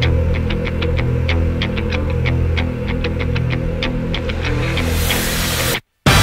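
Background music with sustained low notes under a steady ticking beat; a rising swell of noise builds near the end, and the music then cuts off abruptly.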